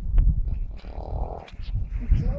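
Wind rumbling on the microphone, with a short breathy blow of about half a second about a second in and a few faint clicks.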